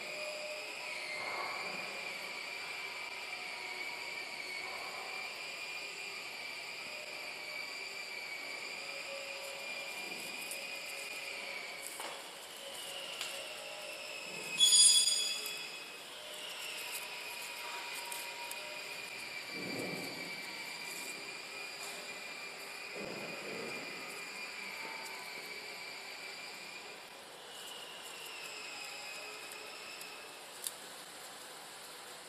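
Steady, high-pitched electrical whine from the powered labeling machine, wavering slightly in pitch. A short electronic beep sounds about halfway through, and there are faint clicks and rustles of parts being handled.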